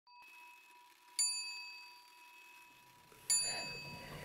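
A small bell struck twice, about two seconds apart, each strike ringing out with a bright metallic tone that fades within a second.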